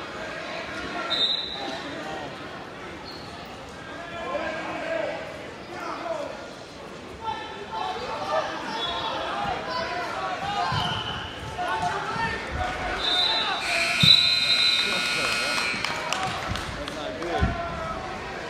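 Shouting and chatter from spectators and coaches echoing around a gymnasium during a wrestling bout, with a few dull thumps. A steady electronic tone sounds for about two seconds near the end.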